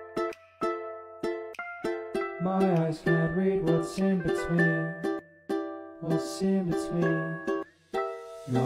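Instrumental passage of a pop song led by ukulele, chords picked in short repeated notes. A bass line comes in about two seconds in, and the music drops out briefly near the end.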